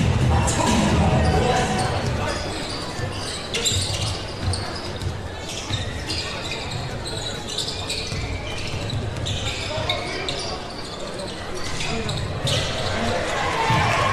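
A basketball being dribbled on a hardwood court in a large, echoing arena, with a few sharp knocks, the clearest about four seconds in, over crowd noise and voices.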